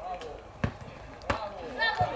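Football on a grass pitch being kicked and bouncing: three sharp thuds about half a second apart. High shouting voices start near the end.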